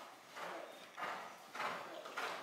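Horse's hoofbeats on soft sand arena footing: muffled thuds in a steady rhythm, about two a second.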